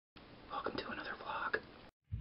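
A man whispering a few quiet words, cut off just before the end.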